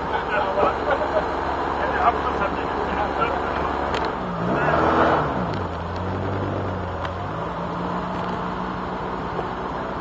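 Triumph Roadster's four-cylinder engine running in a slow drive. About four seconds in, the engine note falls, stays low for a moment, then rises again and runs on steady.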